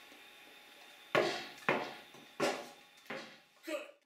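A tennis ball bouncing down wooden stairs: sharp knocks starting about a second in, about two-thirds of a second apart, each dying away quickly, five in all. A low steady hiss lies under the first second.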